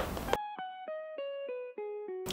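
Background music: a plucked-string melody of single notes, about three a second, stepping downward in pitch.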